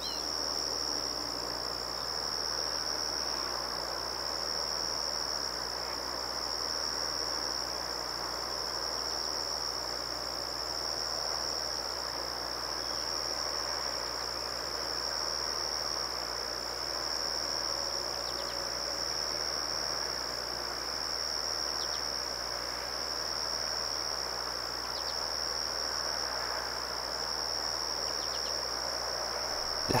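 Steady chorus of crickets, one continuous high-pitched trill that never breaks, over a soft background rush.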